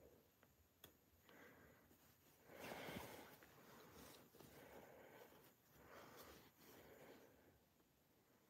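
Faint rustling of jacket lining fabric and thread as a seam is unpicked by hand, in several soft swishes, the loudest about two and a half seconds in.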